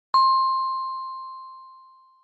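A single bell-like ding, a notification chime sound effect that marks an on-screen tip box appearing. It strikes sharply and rings out, fading away over about two seconds.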